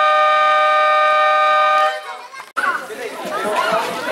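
Basketball scoreboard buzzer sounding one long, steady horn tone that stops about two seconds in, signalling the end of the quarter as the game clock reaches zero. People talking follow.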